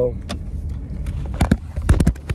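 Handling noise as a hand grabs and moves a phone inside a car: a few sharp knocks and clicks, two pairs close together about a second and a half in and near the end, over a steady low rumble of the car interior.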